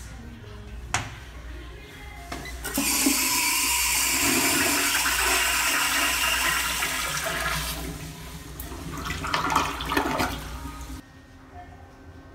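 American Standard compact toilet flushed by a foot-pedal flushometer valve: after a click about a second in, water rushes loudly into the bowl for about five seconds, then turns to gurgling as the bowl drains. The sound cuts off abruptly about a second before the end.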